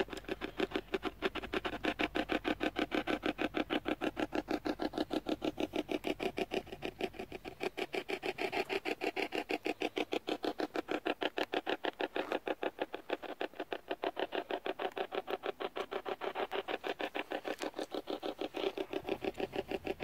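Ghost-hunting spirit box sweeping through radio frequencies: a rapid, even chopping of static and radio fragments, about six or seven bursts a second.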